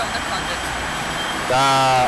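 Steady rushing noise of a motor vehicle in the street, with a man's voice starting near the end.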